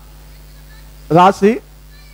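A man's voice through a sound system: two short, emphatic syllables with a rising-then-falling pitch, just over a second in, set in pauses filled by a steady low hum.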